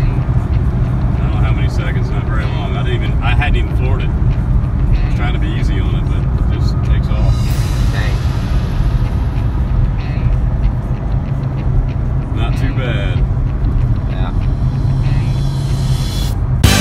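Road and engine noise inside a moving car: a steady low drone, with indistinct voices now and then above it.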